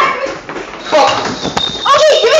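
Indistinct young voices without clear words, louder from about a second in.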